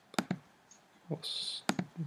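Computer mouse clicking: a quick pair of sharp clicks about a quarter second in and another pair near the end, as blend modes are picked from a dropdown menu, with a brief hiss between them.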